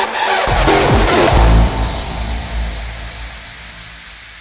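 Hardstyle dance music at a break: the kick drum has dropped out, leaving sweeping synth effects that fall in pitch and a low boom about one and a half seconds in. After that a hissing wash fades away steadily.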